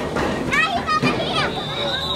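Children shouting and calling out in high-pitched, overlapping voices, the loudest calls about halfway through.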